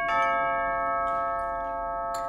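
Electronic two-tone chime. A higher note is already sounding, a lower note joins just after the start, and both are held steadily without dying away.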